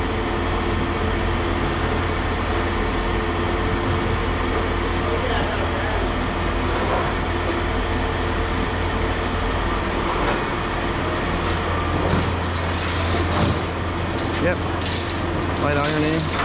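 Steady low machine drone with a couple of steady tones above it, and a few short knocks near the end.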